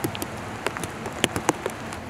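Steady rain, with single drops striking hard surfaces in irregular sharp taps.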